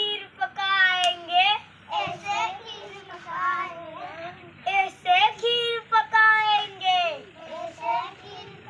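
A child singing a Hindi chant-like game song in short, held phrases with brief pauses between them.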